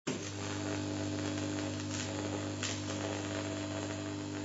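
A steady electronic hum of several low held tones, cutting in abruptly and running at an even level under a logo animation, with two faint brief hissy accents a couple of seconds in.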